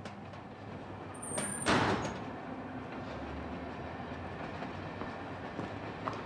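A train passing, with a brief high squeal a little over a second in, a loud rush of noise about two seconds in, then a steady rumble.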